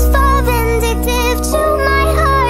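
Nightcore edit of a pop song: sped-up, pitched-up music with a high singing voice over a steady heavy bass.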